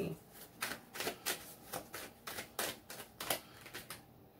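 Tarot cards being shuffled by hand: a run of irregular soft card clicks and flicks, several a second.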